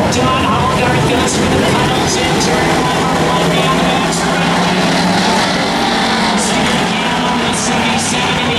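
Several Bomber-class stock cars' engines running around a speedway oval, a loud steady din with no single car standing out.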